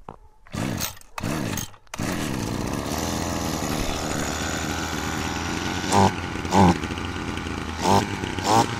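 Robin NB145 brush cutter's small two-stroke engine pull-started: two short pulls on the recoil starter, catching about two seconds in and then running steadily, with two short revs near the end.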